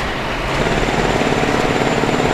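Vehicle sound effect for a crane truck: a heavy engine running with a steady, rapid low rumbling pulse.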